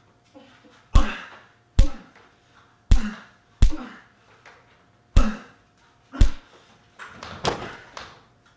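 Play-wrestling impacts in a small living room: six sharp thumps of blows landing, roughly a second apart, then a longer crashing thud near the end as a body lands on a couch.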